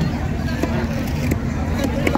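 Busy hubbub of background voices over a steady traffic rumble, with a few short, sharp knocks of a long knife against a wooden chopping stump as a white pomfret is cut.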